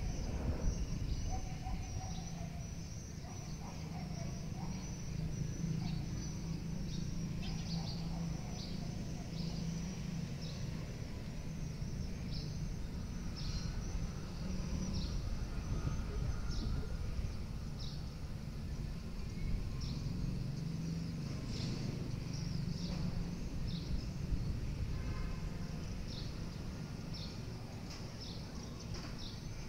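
Outdoor ambience: birds chirping in many short, high calls scattered throughout, over a steady low background rumble.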